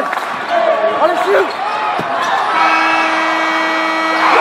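Basketball game in a gym: shouting voices from the crowd and court, and a single sharp knock of the ball bouncing on the hardwood about two seconds in. A steady held tone comes in about halfway through.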